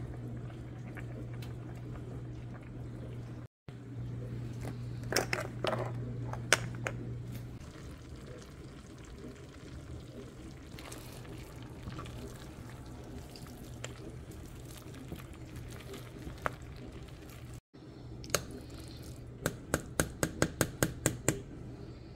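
Boiled potatoes being mashed in a metal saucepan with a plastic potato masher: soft wet squishing, with a quick run of about ten sharp taps near the end as the masher strikes the pot, about four a second. A low steady hum runs under the first several seconds.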